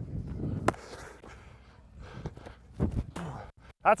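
Rustling and low thumps on a body-worn microphone as the player moves about, with one sharp click about two-thirds of a second in and a few softer knocks after.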